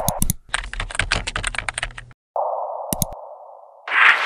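Computer keyboard typing: a fast run of key clicks lasting about a second and a half. After it comes a steady hiss with a couple of sharp clicks, and a whoosh near the end.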